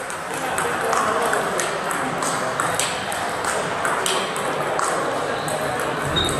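Table tennis balls clicking off tables and bats, a string of sharp irregular taps, over the murmur of voices in a large hall.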